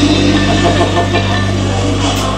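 Live smooth jazz band playing, with bass and keyboards holding sustained low notes under a drum kit.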